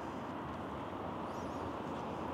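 Steady hum of distant road traffic, with a brief faint high chirp about one and a half seconds in.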